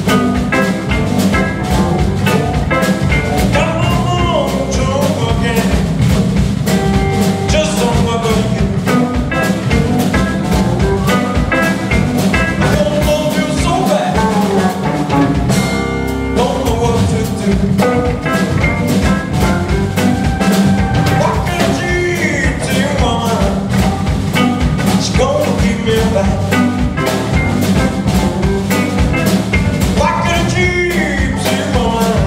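Live blues band playing: electric guitar, bass guitar, drum kit and keyboards, with a male voice singing over a steady beat.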